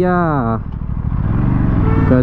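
The Aprilia RS 457's parallel-twin engine running at low revs at walking-to-jogging pace in traffic. A man's shouted call ends about half a second in, over the engine.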